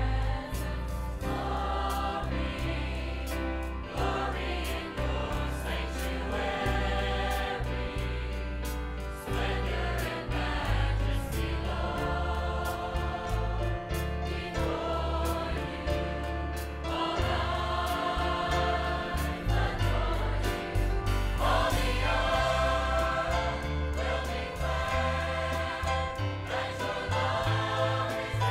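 A large mixed church choir singing an upbeat gospel song, backed by a band with strong bass and a steady drum beat.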